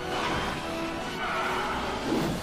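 Dramatic orchestral film score playing through a chase, with a shrill animal-like cry over it.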